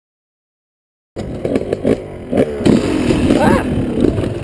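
Silence for about the first second, then a dirt bike's engine cuts in abruptly, running and rising in pitch briefly, with scattered knocks and clatter.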